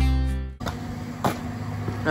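Acoustic guitar background music fading and cutting off about half a second in, followed by a low steady outdoor background with a single light click.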